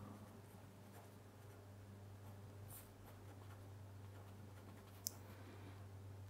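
Near silence with faint scratching of a fineliner pen writing on paper over a low steady hum, and one short sharp click about five seconds in.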